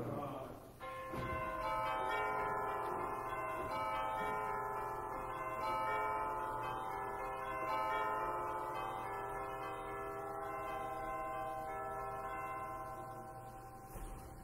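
Soft, bell-like chiming notes held and overlapping, several at once, changing slowly. They start about a second in, after a last bit of speech.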